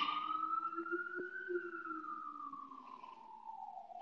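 Emergency vehicle siren wailing, fainter than the voice: one slow tone rising for about a second and a half, then falling away.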